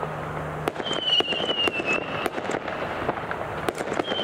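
Fireworks going off: a fast, irregular string of sharp cracks and bangs, with a high thin whistle that falls slightly in pitch from about one to two seconds in.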